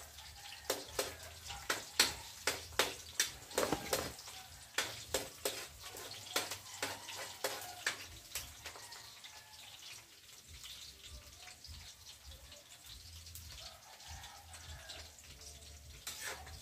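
Metal spatula scraping and knocking against a steel wok while garlic and onion sauté, with light sizzling. The strokes come close to twice a second for the first half, then grow sparser and fainter.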